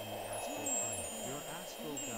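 Ambient meditation soundtrack: high chime-like tones tinkling over a steady high drone, with a faint low murmuring voice underneath.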